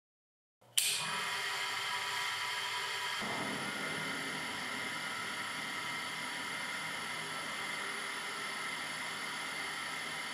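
A grinder demo rig's electric motor switched on about a second in and running steadily at about 1200 rpm with a whine. Its rotor is deliberately unbalanced and carries a plasticine trial mass for in-situ balancing, shaking at about 9 mm/s.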